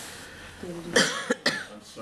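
A person coughing: a quick run of about three sharp coughs a little after a second in.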